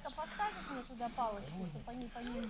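Quiet, indistinct conversational speech over a light background hiss.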